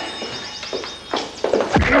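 Background music playing, with footsteps and then a heavy thump near the end as a boot kicks a man crouched under a table.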